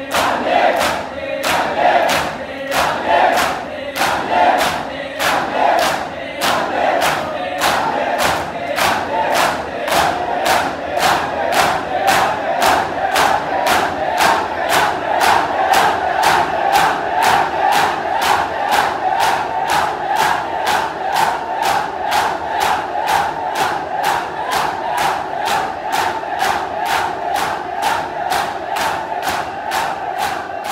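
A crowd of men performing matam, beating their bare chests in unison with sharp slaps about two a second, while the crowd chants and shouts together.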